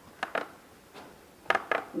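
A few short, sharp clicks: two close together near the start, then three more about a second and a half in.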